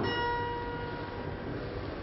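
A bell-like chime struck once, ringing with several clear overtones that fade slowly.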